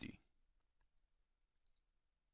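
Near silence with a few faint clicks from a computer keyboard and mouse as a cost value is typed into a form and the next field is selected, a small cluster of them near the end.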